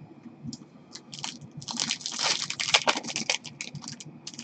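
Wrapper of a 2015-16 Upper Deck Contours hockey card pack being torn open and crinkled by hand: a few faint ticks, then a dense run of crackling about a second in that lasts some two seconds and tapers off.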